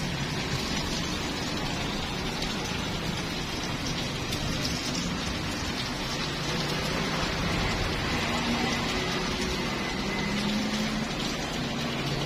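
Steady sizzling hiss of food frying in a cast-iron multi-hole pan on a gas stove.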